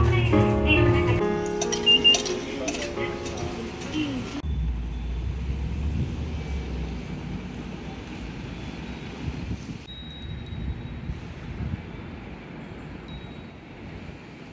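A melody of struck, bell-like chime notes over the low rumble of a bus interior, which cuts off abruptly about four seconds in. It gives way to street ambience with a steady low traffic rumble.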